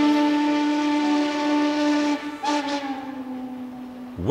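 Steam locomotive chime whistle sounding a long held chord, then a second, shorter blast a little past two seconds in that fades away.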